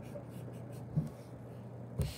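A pen scratching across paper in a run of quick strokes as a loop is drawn around a written answer, over a steady low hum.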